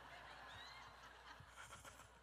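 Near silence: faint room tone, with one faint, brief high-pitched squeak about half a second in.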